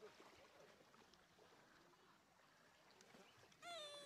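Near silence: faint outdoor background with a person's voice speaking briefly near the end.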